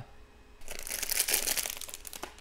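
Crinkling and rustling of cube packaging being handled during unboxing, starting about half a second in and lasting just over a second.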